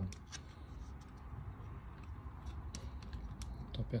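Faint scattered clicks and rubbing as fingers work the base of an airsoft Glock 19's grip, turning and pressing to seat a CO2 cartridge.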